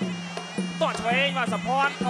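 Traditional Kun Khmer fight music: a buzzy reed oboe plays a bending, gliding melody over a steady droning tone, with a commentator's voice mixed in.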